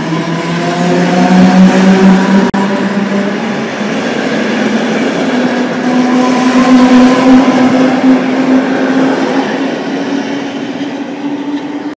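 Yellow NS passenger train running past, with a steady droning hum from its drive and wheels. The hum rises in pitch over the second half as the train picks up speed. There is a short break about two and a half seconds in.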